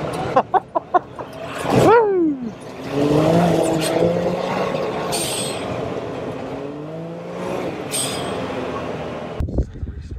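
Can-Am Maverick X3 Turbo RR's turbocharged three-cylinder engine revving hard under load through mud, its pitch sweeping up and down several times. A few sharp knocks come in the first second, and short hissing bursts come twice mid-way.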